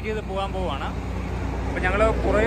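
A man speaking in short phrases over a steady low rumble of highway traffic.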